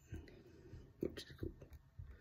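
Quiet speech: a man says a single soft, half-whispered word about a second in, over faint room tone.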